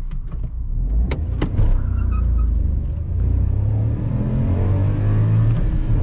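Ford Ka's 1.0-litre three-cylinder, 12-valve engine accelerating hard from a standstill, heard from inside the cabin, its pitch climbing steadily as the revs rise toward about 6,000 rpm. Two sharp clicks come about a second in.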